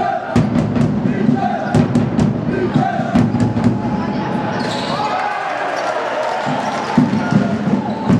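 A basketball being dribbled and bounced on an indoor sports-hall court, heard as short, sharp, irregular bounces over the steady noise of the hall.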